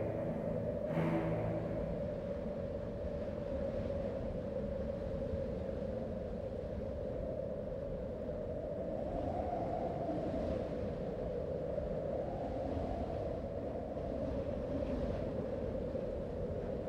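Steady low rumble of wind buffeting the camera microphone. A music track's sustained tones fade out in the first two seconds.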